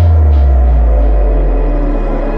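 Drum and bass track in a drum-free break: a deep sub-bass note slides down in pitch and slowly fades under a held, dark synth pad.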